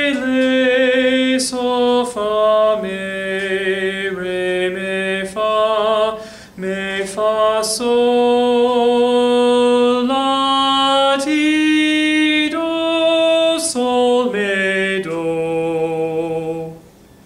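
A lone man singing a melodic-minor sight-singing melody in solfège syllables, unaccompanied, one held note after another with slight vibrato. The line steps down through the scale and then climbs back up.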